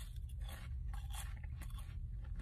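A bite into a crunchy fried churro at the very start, then chewing with faint, irregular crunches.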